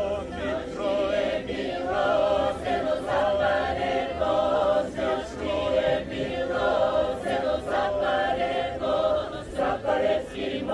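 A group of people singing a Bulgarian folk song together, several voices over a steady held note.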